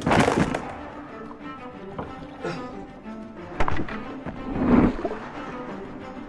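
Film score music with sound effects laid over it: a loud rushing burst at the start and a sharp knock about three and a half seconds in.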